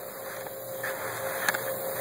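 Steady outdoor background noise with a faint constant hum, and a light click about a second and a half in.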